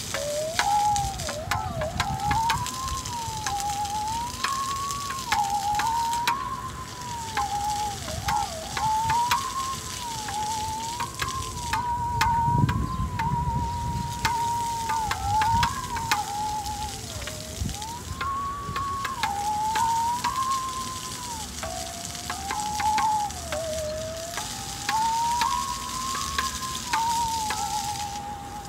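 Musical saw, a handsaw bent between the knees and bowed with a wooden bow, playing a slow melody as one clear wavering tone that slides up and down between notes. Faint clicks come through, and a low rumble rises briefly about halfway through.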